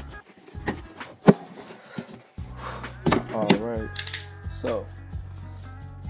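Cardboard shipping box being slit open with a box cutter and its flaps pulled apart: scattered knocks and scrapes of cardboard, the loudest a sharp knock about a second in, over background music.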